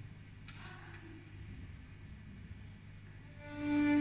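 Quiet hall, then, about three and a half seconds in, the orchestra's violins come in with a single long held bowed note.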